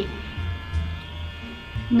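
Toy chocolate fountain's small electric motor buzzing steadily as it pumps chocolate sauce up the tower; it is noisy ("bem barulhento").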